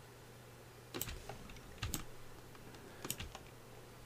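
Computer keyboard keys pressed in three short clusters about a second apart, faint over a low steady hum.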